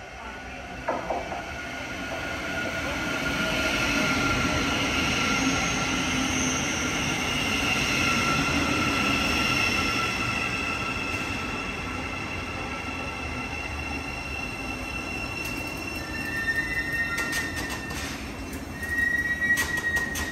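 Great Northern electric multiple unit running into the platform and slowing. High whining tones ride over the rumble of the wheels and fall slowly in pitch. Near the end a fresh high squeal and a few sharp clicks come in as it brakes.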